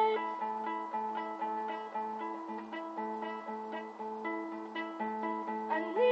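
Nylon-string classical guitar playing alone: a steady run of picked notes repeating over a held low note, with no singing.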